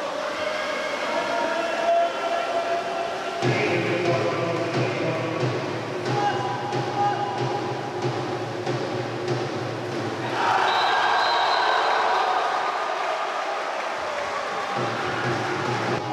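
Background music with sustained chords; a steady low bass comes in about three and a half seconds in.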